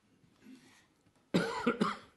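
A person coughing twice in quick succession in the second half.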